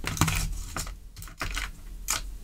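Light, uneven clicks and taps of small tools and objects being handled on a workbench, about half a dozen in two seconds.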